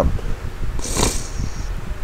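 A person's breath or sniff about halfway through, over a low, irregular rumble of microphone noise.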